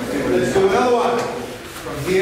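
Indistinct men's voices talking, with no clear words.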